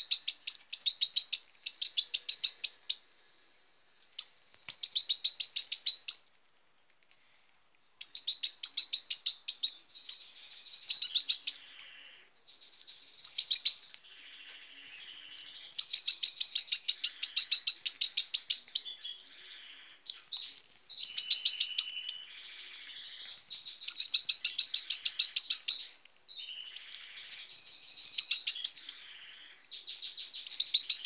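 A hand-reared fledgling goldfinch chirping in quick high-pitched runs of about ten calls a second, each run lasting a second or two with short pauses between. The runs are the begging calls of a young bird being fed. Fainter twittering fills some of the pauses.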